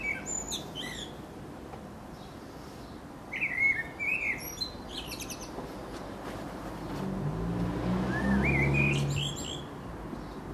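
A common blackbird singing: three phrases, each a low fluty warble followed by a thin, high twitter. A low drone swells under the last phrase.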